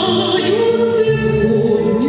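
A woman singing a Russian romance into a handheld microphone, holding long, gliding notes over instrumental accompaniment.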